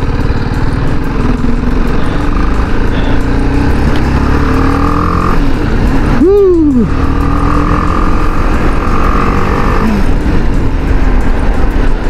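BMW G310GS single-cylinder engine running under way, its pitch climbing slowly as the bike gathers speed, with a brief rev that rises and falls sharply about six seconds in.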